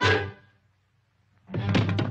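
A sudden cartoon thunk with a short ringing fade, then about a second of silence, before orchestral music comes back in near the end.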